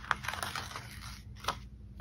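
Faint rustle with a few small clicks, near the start and again about a second and a half in, as a pre-cut washi tape strip is peeled off its sticker sheet and handled.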